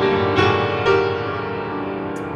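Upright piano being played: three chords struck within the first second, then left ringing and slowly fading.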